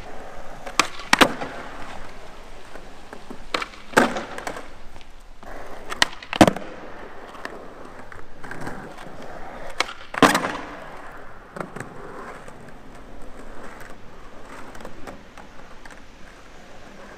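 Skateboard wheels rolling on smooth concrete in a large hall, with sharp wooden clacks of tail pops and landings: pairs about half a second apart near the start, around four seconds and around six seconds, then the loudest single clack just after ten seconds.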